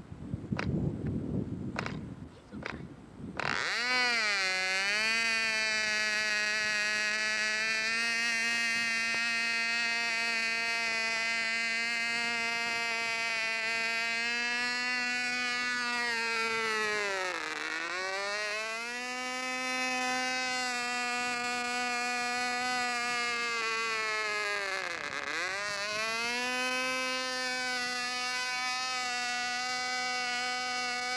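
Model airplane engine being started: several sharp clicks as the propeller is flipped, then the engine catches about three and a half seconds in and runs at a steady high-pitched buzz. Twice, well into the run and near the end, it slows sharply and then speeds back up.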